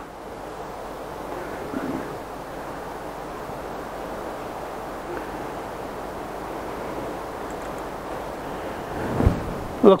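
Gale-force wind blowing: a steady rushing noise.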